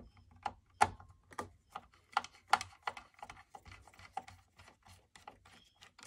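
Screwdriver working two small screws out of a Keurig coffee maker's plastic top housing: a string of irregular light clicks and scrapes, several a second.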